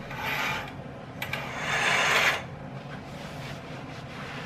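Curtains being drawn shut along their rod: two scraping swishes, the second longer and louder, with a couple of sharp clicks just before it.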